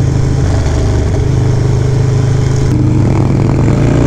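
Harley-Davidson Low Rider S V-twin running steadily at road speed, with wind rush across the microphone. The note shifts slightly near the end.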